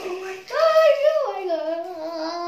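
A child's voice singing long held notes: a higher note from about half a second in, dropping to a lower held note just after the middle.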